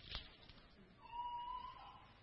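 A faint soft knock, then a thin steady high squeak lasting about a second.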